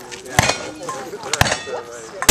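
Two gunshots about a second apart at steel targets, the second followed by a brief metallic ring from the struck steel.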